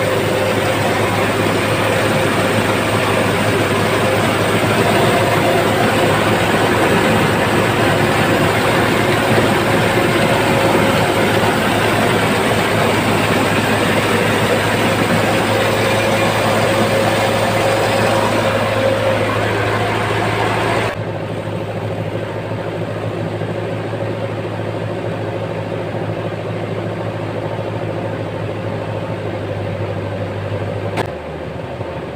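Mobile rice mill running while milling palay: a steady engine hum with the dense rush of the hulling and milling machinery. About two-thirds of the way through the sound suddenly turns duller and somewhat quieter, while the low hum goes on.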